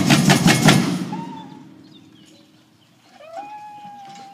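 A samba bateria of surdos, snare drums and repiniques plays its last few loud strokes in the first second, then rings out and fades to quiet. Near the end a single high tone rises briefly and then holds as one long note.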